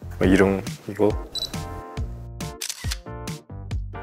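Camera shutter sound effects clicking several times over background music.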